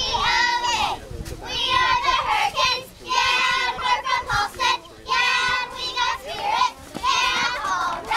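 Young girl cheerleaders chanting a cheer in unison, shouting short rhythmic phrases about once a second.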